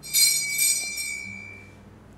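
Small altar bell rung with two or three quick strokes, ringing out and fading away within about two seconds, marking the priest's communion from the chalice.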